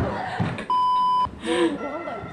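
A single electronic censor bleep: one steady tone at a fixed pitch, lasting about half a second, starting a little under a second in, with a bit of voice just before and after it.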